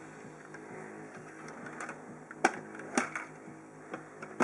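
Small hard clicks and ticks of a 1:24 diecast model car being handled on a plastic display stand, with two sharp clicks about two and a half and three seconds in as the loudest sounds, over faint background music.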